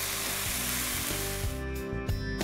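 Beef and vegetable stir-fry sizzling in a hot wok, with background music under it; the sizzling cuts off about one and a half seconds in and the music carries on.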